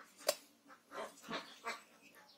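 A knife blade striking and cutting into the husk of a green coconut: one sharp knock near the start, then three softer cutting strokes.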